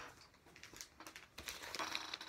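Clear plastic outer sleeve of a vinyl LP crinkling and rustling as the record is picked up and handled, with a few light clicks.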